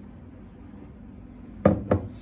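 A round glass Midnight Fantasy perfume bottle is set down on a table top, giving two knocks in quick succession near the end, the first the louder.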